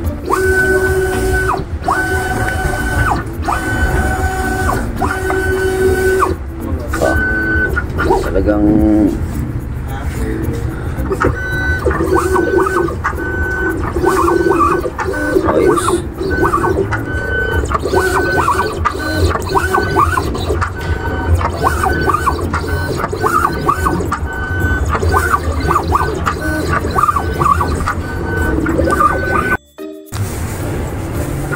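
Vinyl cutting plotter running a cut, its carriage and roller motors whining in a stop-start tone that switches on and off in stretches of about a second as the blade head traces round stickers. Over a steady low hum.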